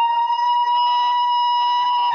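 A high-pitched human voice holding one long, loud, steady cry that slides up into the note and falls away near the end, a shout of joy.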